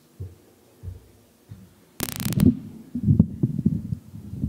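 Microphone handling noise: a few soft low thumps, then a sharp scraping rustle about two seconds in and low bumps and rubbing as a handheld microphone on its stand is gripped and adjusted.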